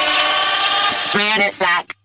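Electronic dance-pop song at a build-up: a held vocal line with pitch glides, wavering near the end, then a brief cut-out to silence before a heavy beat with deep bass drops in right at the end.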